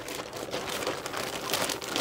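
Clear plastic bag crinkling as it is handled, a continuous run of small crackles.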